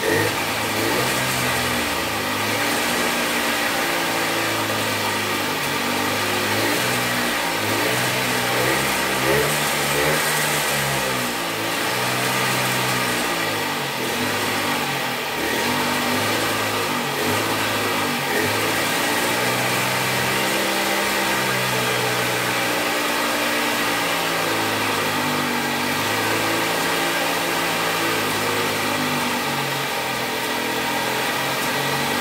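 Small two-stroke engine of a handmade mini bike running through the engine's original exhaust, its speed rising and falling again and again every second or two. Its idle-speed regulator has not yet been set.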